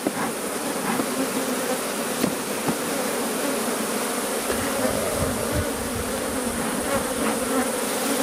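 Honeybees buzzing steadily in large numbers over an opened top-bar hive's exposed honeycomb, with a low rumble about halfway through.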